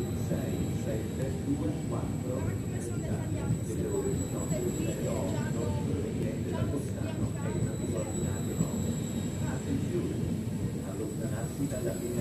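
Double-deck electric regional train rolling slowly along the platform, a steady low rumble of wheels and running gear, with people's voices chattering over it.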